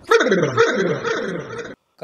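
Dog-like whimpering cries: a string of overlapping wails, each falling in pitch, cutting off suddenly near the end.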